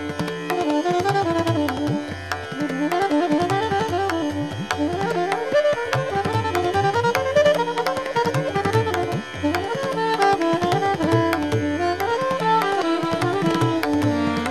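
Soprano saxophone playing a fast, stepping melodic line in a Hindustani raga, accompanied by tabla with gliding bass-drum (bayan) strokes over a steady tanpura drone.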